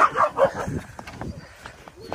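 A dog giving three quick, short barks in the first half second.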